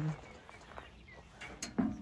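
A woman's speech trails off at the start, leaving faint outdoor background noise with no distinct event. Her voice starts again briefly near the end.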